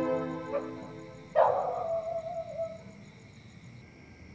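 Film background music fades out, then a single dog bark comes in suddenly and trails into a short falling howl. Faint, regular high chirps run underneath as night ambience.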